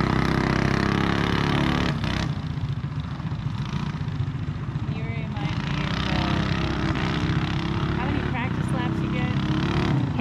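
CycleKart's small engine running steadily, then dropping to a quieter, rougher idle about two seconds in.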